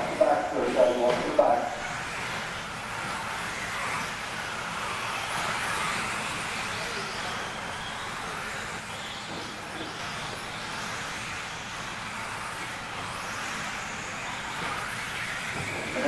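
Several electric 1/10 2WD RC buggies with 17.5-turn brushless motors racing around an indoor dirt track, a steady whine of motors and tyres that rises and falls as the cars speed up and slow down. A voice speaks briefly at the start.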